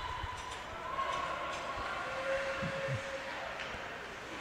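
Ice hockey rink sound during live play: a steady hiss of skate blades on the ice, with a few faint stick clacks and distant player voices.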